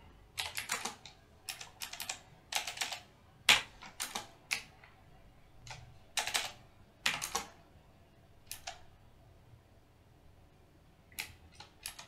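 Typing on a computer keyboard: irregular runs of keystrokes with short pauses between them, editing a line of text. The typing thins out to near nothing for a couple of seconds, then a few last keystrokes come near the end.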